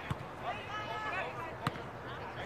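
A volleyball struck twice by players' hands and arms: two sharp smacks about a second and a half apart, the second the louder, with distant voices of the players.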